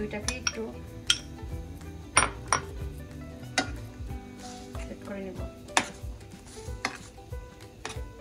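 Metal spoon clinking and scraping against a stainless steel pan while pineapple chunks are stirred into sugar syrup: a string of sharp clinks at irregular intervals.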